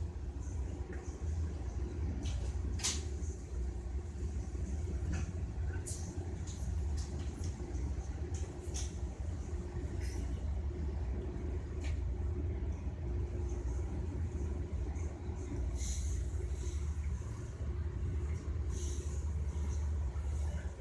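Steady low rumble of a moving train heard from inside the passenger carriage, with a few short sharp clicks scattered through it.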